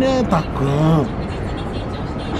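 A man's voice speaks briefly at the start, then steady city traffic noise fills the rest.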